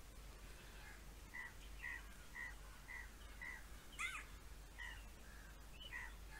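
A bird calling faintly in the background: a run of short, evenly spaced notes about two a second, with a different, gliding call about four seconds in.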